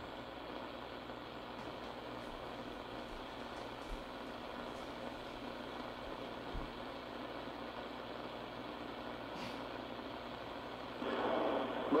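Steady static hiss from a shortwave receiver tuned to CB channel 6 (27.025 MHz AM) with no station transmitting, with a few faint clicks. Near the end the noise gets louder as a signal comes back on the channel.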